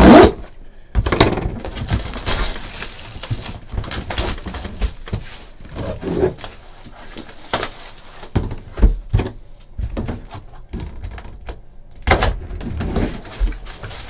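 Plastic shrink wrap being cut and torn off a cardboard trading-card box, crinkling, with scratches and sharp knocks as hands work the box. Then comes the cardboard lid sliding up and off.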